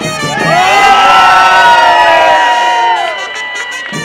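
A crowd of dancers cheering and shouting together, many voices rising and falling in pitch at once. The cheer is loudest in the middle and dies down about three seconds in.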